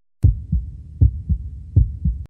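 Heartbeat sound effect in a TV show's ident: low lub-dub double thumps, three beats about three-quarters of a second apart.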